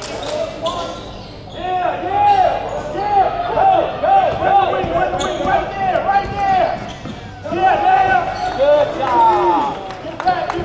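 Basketball sneakers squeaking on a hardwood gym floor: many short squeaks in quick succession, with a lull about seven seconds in, and a ball bouncing on the floor.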